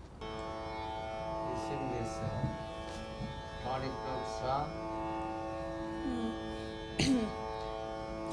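Tambura drone switched on: a steady drone of several sustained tones sets in right away and holds throughout. Quiet talk sounds over it, and there is a brief sharp sound about seven seconds in.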